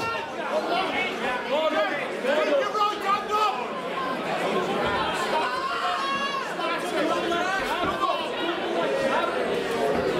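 Crowd of spectators in a large hall talking and calling out, many voices overlapping at once.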